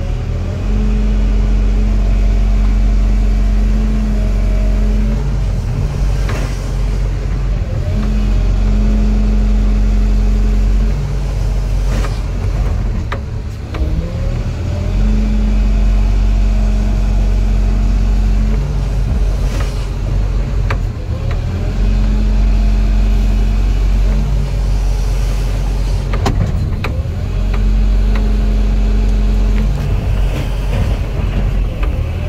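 Hydraulic excavator's diesel engine and hydraulics heard from inside the cab, the engine loading up with a stronger, deeper hum in stretches of a few seconds as the boom and bucket work, then easing between them. A few short knocks come through along the way.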